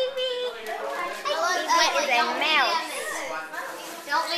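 Several children's voices chattering and talking over one another, with a sing-song rise and fall in pitch about halfway through.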